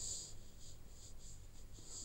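Faint, high-pitched scratchy hiss that pulses on and off several times a second, over a low background hum.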